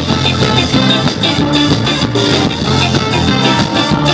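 Live ska band music, loud, with a steady beat running throughout.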